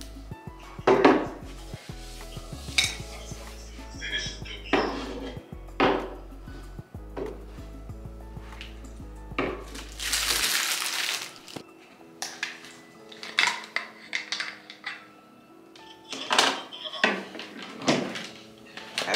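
Glass jars and small bottles clinking and clacking against a countertop as they are picked up, moved and set down, a series of separate knocks, with a short hiss about ten seconds in.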